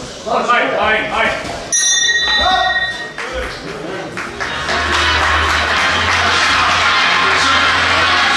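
A boxing-ring bell rings once about two seconds in, a clear ringing ping that lasts about a second and a half and marks the end of the round. From about halfway, music with a steady low beat and crowd noise take over.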